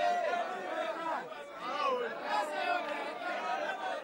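A crowd of many voices talking and calling out at once, overlapping chatter with no single speaker standing out.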